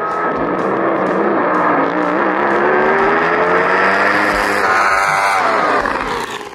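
Top Fuel Hydro drag boat's supercharged V8 running at full throttle on a run, its note rising steadily as the boat accelerates, with music underneath.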